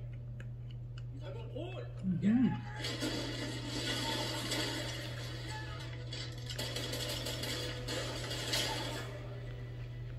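A person's voice sliding in pitch about two seconds in, followed by background music for several seconds, over a steady low hum.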